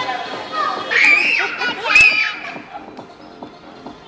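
High-pitched children's voices calling out, loudest from about one to two and a half seconds in, with a single sharp click about two seconds in.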